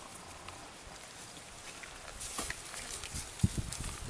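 An animal's sounds with scattered clicks and knocks, busier in the second half, and one sharp knock about three and a half seconds in.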